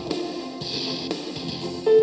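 Rock-style backing track played back in the UJam online music app: rhythm guitar and drums under a grand-piano melody.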